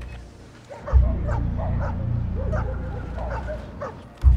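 An animal's short whining, yelping calls, several in a row, rising and falling in pitch. They sit over a low pulsing drone that comes in suddenly about a second in.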